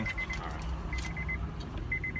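A car's door-open warning chime sounding in short runs of quick, high beeps, about a second in and again near the end, over a low steady hum from the stopped car.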